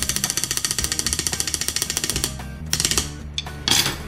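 A rapid drum roll beaten with a pair of Vic Firth wooden drumsticks, about a dozen even strokes a second, stopping a little past two seconds in. A short, sharp clatter follows near the end.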